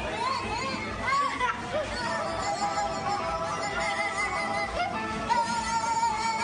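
Two young children laughing with their voices shaken into a wobbling, quavering sound as they stand on vibrating exercise plates. There is music underneath.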